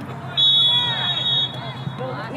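Referee's whistle blown once in a single high, steady blast of about a second, starting shortly after the beginning and trailing off; the two close tones are typical of a pealess whistle. Shouting voices sound beneath it.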